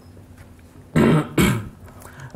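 A man clears his throat once, about a second in: a short voiced sound ending in a sharp breathy burst.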